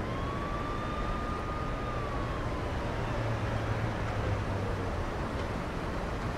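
Steady low rumble and hiss of street traffic ambience, with a faint thin siren-like tone that rises slightly and then slowly falls over the first half.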